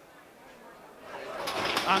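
Greyhound starting traps springing open at the start of a race: a rising rush of noise from about a second in, with a brief sharp clatter shortly before the end.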